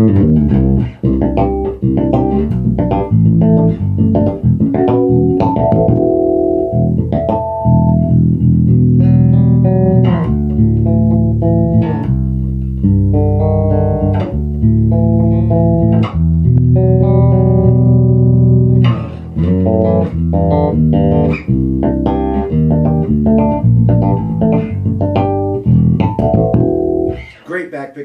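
Electric bass played solo: a Gamma Jazz Bass with active EMG pickups, heard through a Bergantino HDN410 four-by-ten cabinet. A run of plucked notes, some short and some held, stops about a second before the end.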